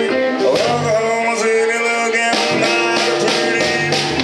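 Live blues band playing a rock-and-roll shuffle on electric guitars, bass and drums, with long held, bending notes over it from a blues harmonica played into a cupped vocal microphone.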